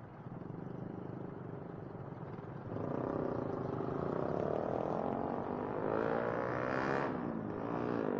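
KYMCO Super 8 scooter engine accelerating: a low, quiet run for the first few seconds, then a sudden jump in loudness about three seconds in as the engine note rises in pitch with speed. The pitch climbs higher toward the end and dips briefly just before the end.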